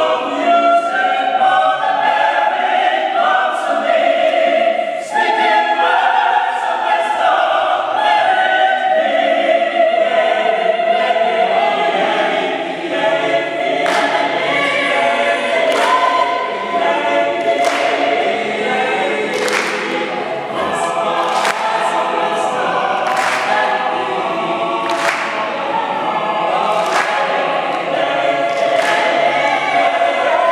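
Mixed choir singing a cappella. About halfway through, the singers start clapping a steady beat along with the song, roughly once a second.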